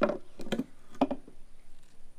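A man's voice: a few short, hesitant syllables with pauses between them.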